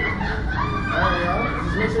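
A rider's high-pitched, wavering vocal squeal with gliding pitch, over a steady low rumble.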